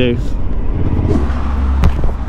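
Suzuki V-Strom motorcycle on the move through town, heard from the rider's position: a steady low engine and wind rumble that grows stronger in the second half, with a short sharp click near the end.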